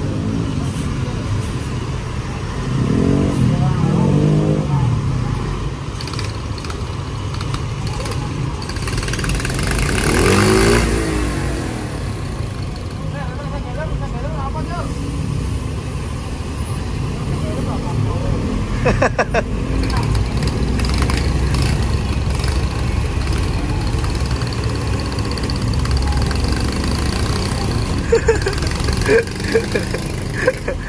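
Road traffic passing close by on a wet road: a large coach and motorcycles going past. Engines rev up and fall back about three seconds in and again about ten seconds in, the second time with a loud rush of tyre and engine noise.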